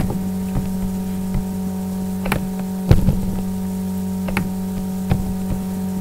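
Steady low electrical hum with a few faint clicks scattered through.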